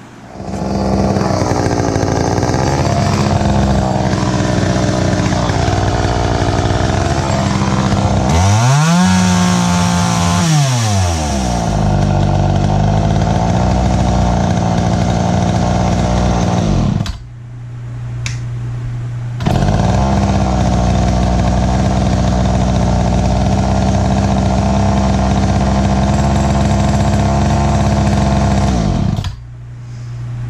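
Poulan 2000 two-stroke chainsaw running on its rebuilt carburetor, revved once about nine seconds in with the pitch rising and falling back to idle. The engine sound breaks off about 17 seconds in, returns about two seconds later, and stops just before the end.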